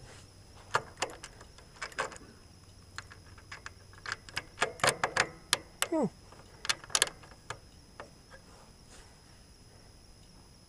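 Small metallic clicks and taps of hands working a brake light switch and its pedal spring on the underside of a Ford 3000 tractor, coming irregularly in short clusters. There is a brief falling tone about six seconds in.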